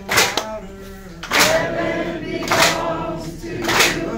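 A Gullah call-and-response song sung by a group of voices, a man leading with others joining in. A washboard is struck and scraped in a steady beat, one sharp rasping stroke about every 1.2 seconds.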